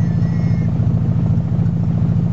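Nissan KA24DE 2.4-litre inline-four idling steadily as it warms up, heard from the driver's seat.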